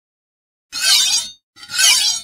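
Sound effect of a knife cutting a glass marble in two: two short noisy bursts, each about two-thirds of a second long, the second following just after the first.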